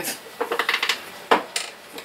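Hard plastic barricade lamps clattering as they are handled and moved: a run of light clicks, then a couple of sharper knocks past the middle.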